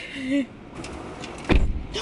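A car door slamming shut about one and a half seconds in: a single heavy, deep thud.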